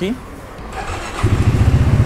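Segway Snarler AT6 570 ATV's single-cylinder engine started on the electric starter: a brief crank a little under a second in, then the engine catches just past a second and settles into a steady idle.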